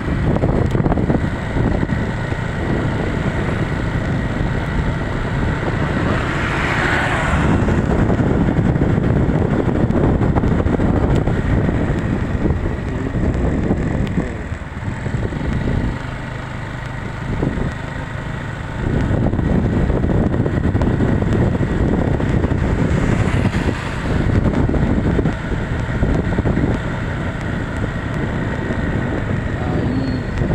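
Motorcycle riding along a road: engine running and wind on the microphone in a steady low rumble. It drops back for a few seconds past the middle, then picks up again.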